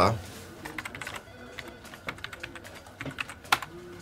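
Typing on a computer keyboard: a run of irregular key clicks, with one louder keystroke near the end.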